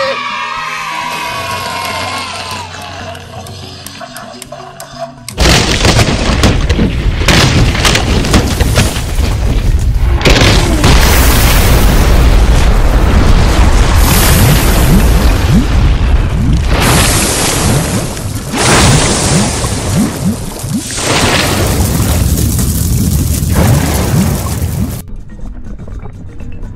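Volcano eruption sound effect: a loud rumble of booms and crashes that starts suddenly about five seconds in and runs for some twenty seconds, then cuts off near the end, with background music.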